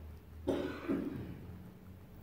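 A person coughs, a sudden double cough about half a second in that quickly dies away.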